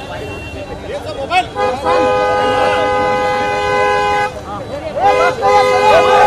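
A car horn held down for about two and a half seconds, then sounded again a second later and held into the end, over a crowd of voices.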